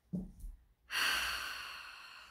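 A woman's long sigh: a brief low hum of voice, then an audible exhaled breath about a second in that fades away slowly.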